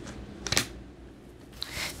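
Tarot cards being handled: a short burst of papery card rustle about half a second in, over faint room tone.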